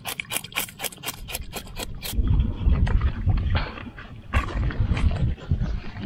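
A knife scraping the scales off a fish, in quick, even strokes of about six or seven a second. About two seconds in, the scraping gives way to loud, uneven low rumbling.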